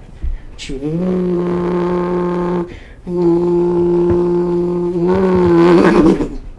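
A man imitating a Honda Civic's engine with his mouth: two long, steady droning notes of about two seconds each with a short break between. The second note wavers and swells near the end.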